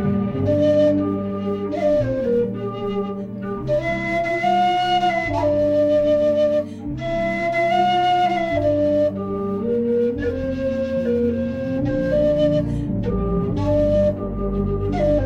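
Carbon-fibre low C whistle playing a slow melody of held and stepping notes, over a low sustained accompaniment.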